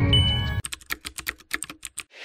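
Jingle music that stops about half a second in, followed by a quick, even run of computer-keyboard typing clicks, a sound effect for on-screen text being typed out.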